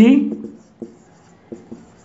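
Marker pen writing on a whiteboard: a few faint short strokes.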